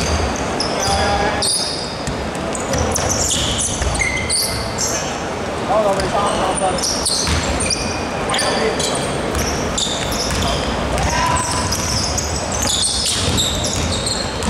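Basketball being dribbled on a hardwood court, with repeated low thuds, among many short high squeaks of sneakers on the floor and players calling out, all echoing in a large hall.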